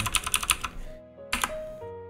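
Computer keyboard keys clicking in a quick run of about ten rapid strokes, then a short second burst about a second and a half in.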